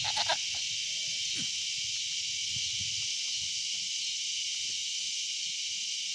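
A goat kid gives a short, quavering bleat at the very start, with a second brief call about a second in, over a steady high-pitched hiss.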